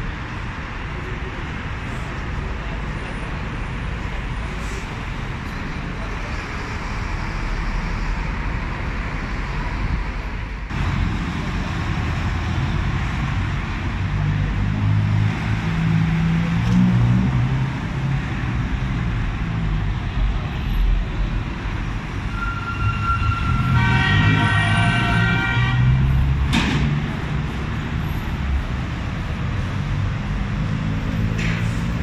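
Busy road traffic at a roundabout: the engines of buses, minibuses and cars running and pulling through, with a vehicle horn held for about three seconds about three-quarters of the way in, followed by a sharp knock.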